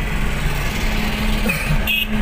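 Steady road and engine noise inside a moving car at highway speed, with a low, even hum. A short high tone sounds near the end.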